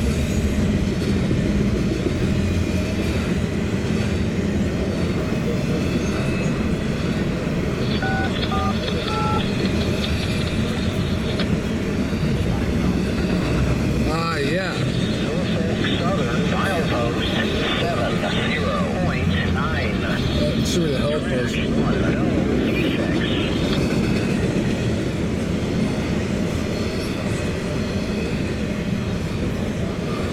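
Double-stack intermodal container train rolling past close by: a steady rumble and clatter of the railcar wheels on the rails.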